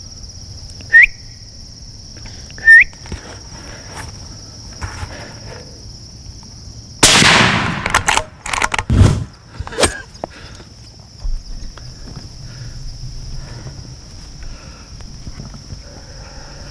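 Two short shouted barks to stop a charging coyote, then a single loud rifle shot about seven seconds in that rings off for about a second, followed by a few sharper knocks. Insects shrill steadily behind.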